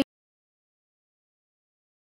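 Silence: the sound track drops out completely just after a word ends.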